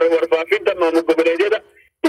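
Speech only: a man talking, his voice breaking off about one and a half seconds in.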